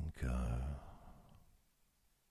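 A man's soft, breathy voice drawing out the end of a slow spoken word, trailing off about a second in.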